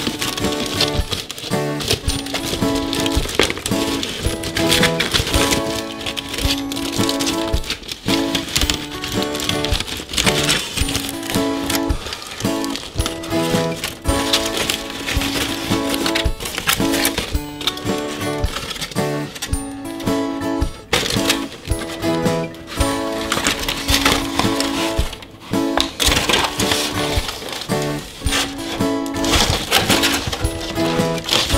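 Foil wrapper crinkling and rustling in quick, irregular clicks as it is peeled off a chocolate egg, over background music with a steady tune.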